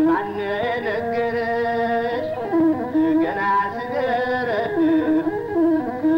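Old Ethiopian song: a singer's voice with masinqo, the one-string bowed fiddle, in ornamented melodic lines that slide up and down in pitch.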